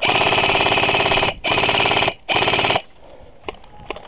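Systema PTW electric airsoft rifle firing three full-auto bursts close to the microphone: a long burst of about a second and a quarter, then two shorter ones, each a rapid, even rattle of shots.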